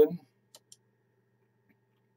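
Two faint computer mouse clicks in quick succession about half a second in, with near silence around them.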